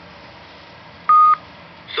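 A single short, steady electronic beep from a vintage Talking Battleship electronic game unit, about a second in.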